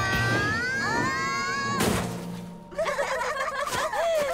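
Animated sledding crash: a long rising cry as the sled sails through the air, then a thud of landing in snow about two seconds in. After a short lull the characters laugh over background music.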